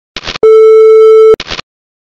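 TV test-pattern sound effect: a short burst of static, a steady beep lasting about a second, then another short burst of static that cuts off.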